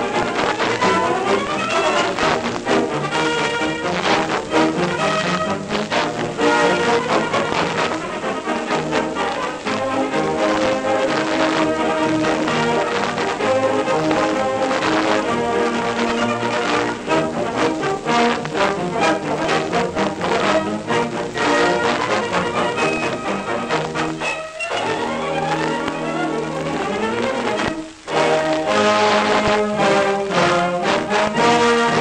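Band music with brass instruments, played back from a 1930 Victor 33 rpm demonstration record (an early long-playing 'Program Transcription') on a turntable. There is a brief pause in the music near the end.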